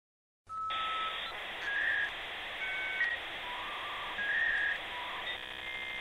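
Electronic beeping tones stepping between several pitches over a steady hiss, starting about half a second in.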